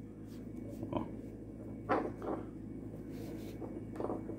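Faint handling noises as a braided rope knot is worked and adjusted on a metal ring: soft rubbing and small knocks, with one louder knock or rustle about two seconds in, over a steady low hum.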